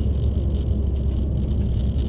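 Peugeot RCZ R's turbocharged 1.6-litre four-cylinder and road noise heard from inside the cabin: a steady low rumble at an even pace, with no revving.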